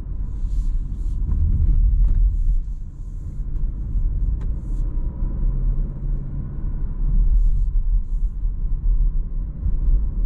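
Cabin sound of a Renault Arkana 1.3 TCe four-cylinder turbo petrol car driving through town: a steady low engine and road rumble as the car gently picks up speed, with a few short faint hisses and ticks.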